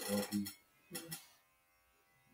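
A man's brief low closed-mouth chuckle: three quick pulses at the start, then two faint clicks about a second in.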